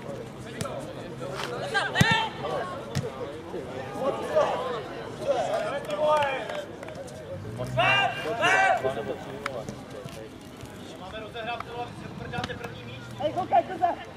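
Footballers shouting short calls to each other across an open pitch during play, the loudest a pair of calls about eight seconds in. There is a sharp knock about two seconds in.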